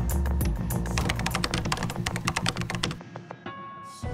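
Title music with a fast run of computer-keyboard typing clicks over a low held bass. About three seconds in the clicks stop and only a quieter held tone remains.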